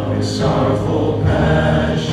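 Live praise-and-worship band playing, with sung vocals over held keyboard and guitar chords; the low bass note steps down about halfway through.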